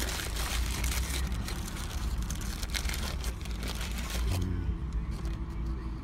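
Paper burger wrapper crinkling and rustling as it is unfolded by hand, for about four seconds, then stopping. Under it runs the steady low rumble of a car cabin.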